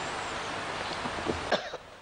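A steady hiss that drops away suddenly about one and a half seconds in, with a short cough just as it cuts off.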